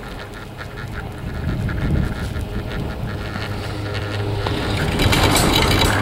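High-speed chairlift in motion: a steady low hum with scattered ticks from the running lift, mixed with wind on the microphone. A louder, rougher, squeaky rattle starts about five seconds in.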